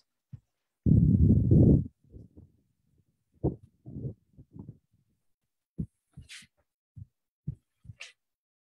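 A loud, low buzzing burst about a second in, followed by scattered short, muffled low thumps, heard over a video-call audio line.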